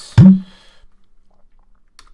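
A brief, loud mouth sound close to the microphone, a smack that runs into a short hum rising in pitch, then quiet with a single faint keyboard keystroke near the end.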